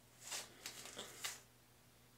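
A few faint rustles and soft clicks within the first second and a half, from handling sea monkey growth food and its small measuring spoon before a scoop is fed into the tank.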